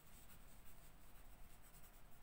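Faint scratching of a pen writing on paper, a run of short quick strokes.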